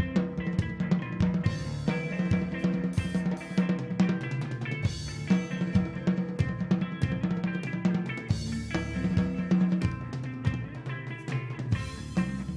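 Live rock band playing an instrumental passage: electric guitar over a busy drum kit, with dense kick and snare hits throughout.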